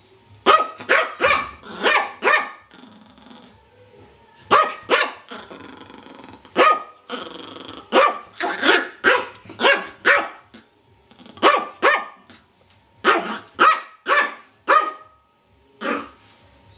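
Yorkshire terrier barking in quick bursts of two to five sharp barks, with short pauses between the bursts.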